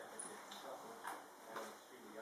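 Faint ticks, about two a second, over a low room murmur.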